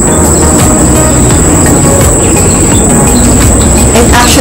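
Wind buffeting the microphone: a loud, steady low rumble with scattered crackles, music faintly underneath.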